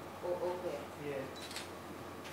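Faint voices talking in a room, with a single sharp click about one and a half seconds in.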